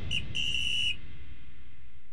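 Two whistle blasts, a short pip and then a steady blast of about half a second, over a low rumble that dies away.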